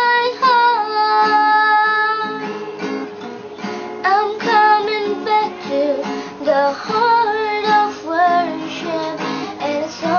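A young woman singing a worship song while strumming her own acoustic guitar.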